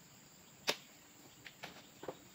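Sharp knocks as oil palm fruit bunches are speared with a spike pole and loaded onto a truck: one loud crack about a third of the way in, then two fainter knocks near the end.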